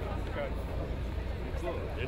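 Several people talking over one another in short snatches, over a steady low rumble.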